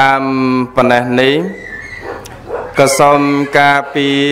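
Male voice chanting in the drawn-out melodic style of Khmer Buddhist chant: long held notes, one sliding down in pitch about a second and a half in, a short lull, then the chant picks up again near the end.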